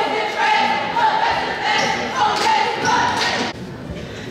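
Voices in a gym chanting in long held tones, cutting off about three and a half seconds in; a basketball bounces on the hardwood court a few times near the end.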